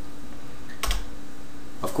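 One sharp click of a computer input, about a second in, confirming a file-save dialog, over a faint steady hum.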